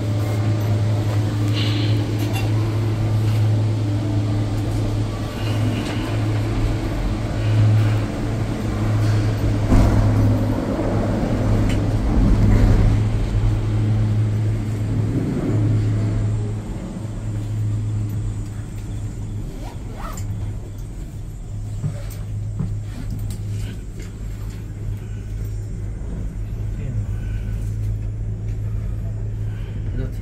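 Ngong Ping 360 gondola cabin running through the terminal and out onto the line: a steady low hum with rumbling from the station drive. About halfway through the hum fades and the cabin runs more quietly once it is out on the cable.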